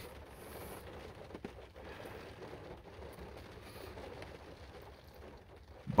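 Faint, steady background noise inside a car's cabin, with a couple of soft clicks about a second and a half in.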